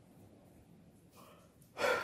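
Near silence, then a man's sharp, noisy gasp of breath close to the microphone near the end.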